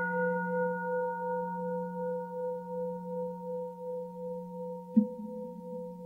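Singing bowl struck once, ringing with a wavering hum that slowly fades. About five seconds in, a second strike adds a slightly higher low note.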